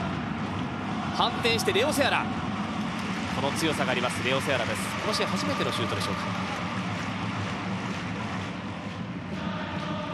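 Steady stadium crowd noise from a football match, with a voice heard over it at times in the first half.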